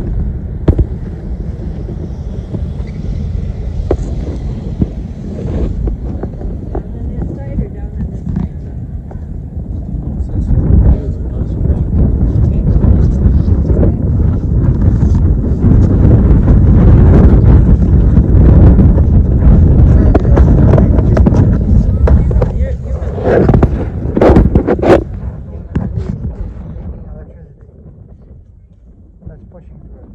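Wind buffeting a handheld phone's microphone as a low rumble that grows loudest in the middle and dies down near the end, with people's voices in the background.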